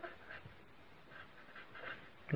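Faint scratching of a pen writing on paper, a series of short strokes.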